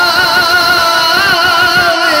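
A man singing a Sufi kalam (naat-style recitation) into a microphone, holding one long note with vibrato over a low rumble.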